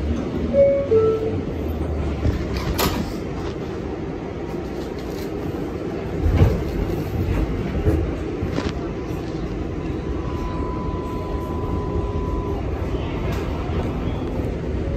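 A train running, heard as the steady rumble and rattle of a rail ride, with a few knocks. A thin steady squeal lasts a couple of seconds in the second half.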